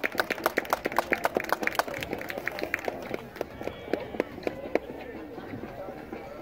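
A few spectators clapping by hand, sharp claps several times a second that thin out after about three seconds, with faint chatter.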